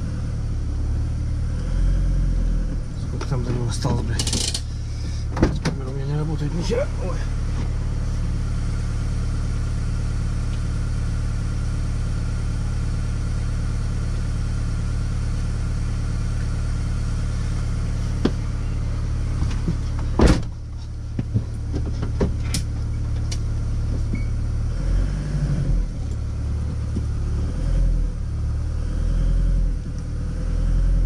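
Motorhome engine running steadily at low revs while the vehicle creeps forward during slow parking manoeuvres. Scattered knocks and clicks about three to seven seconds in, a single sharp knock about twenty seconds in, and small rises in engine speed near the end.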